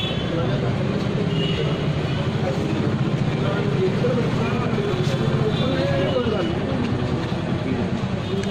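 Several people talking indistinctly over a steady low rumble.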